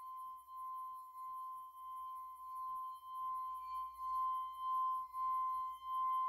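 A pure electronic tone near 1 kHz pulsing about one and a half to two times a second. It grows louder and slightly quicker toward the end, a tense sound-design drone.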